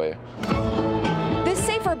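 Solo cello bowed, holding sustained notes with vibrato, starting about half a second in.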